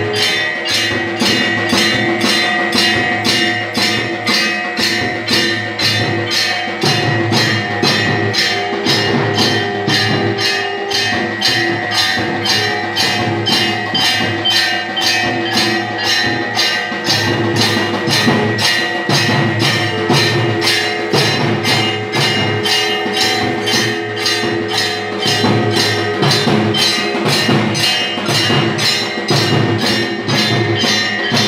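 Temple aarti: bells ringing continuously over a fast, even beat of drums and percussion strikes.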